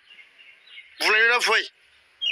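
A man's voice, a short spoken phrase about a second in, with faint outdoor background sound in the pauses either side.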